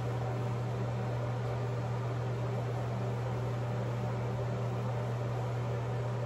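Steady low hum with an even hiss behind it, like a fan or ventilation unit running, with no change and no other sound.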